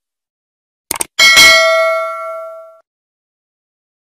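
Subscribe-button animation sound effect: a quick mouse click about a second in, then a single bell ding that rings out and fades over about a second and a half.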